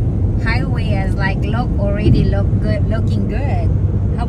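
Steady road and engine noise inside a car moving at highway speed, with people talking over it.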